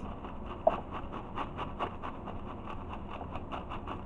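Light rustling with a quick run of small clicks and taps as loose pieces are tipped and shaken from a plastic baggie into a bucket, with one sharper tick under a second in.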